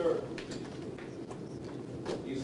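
Low, muffled murmur of voices spoken away from the microphone, with a few faint clicks.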